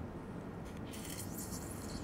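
Steady low operating-room background noise, with a higher hiss joining just under a second in.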